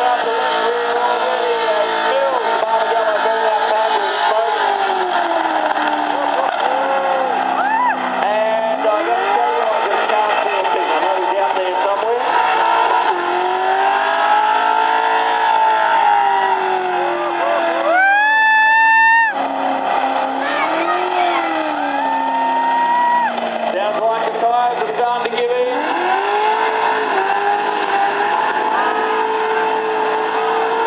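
A ute's engine revving hard during a burnout, its rear tyres spinning. The revs swing up and down over and over, peaking high and sharp for about a second a little past halfway.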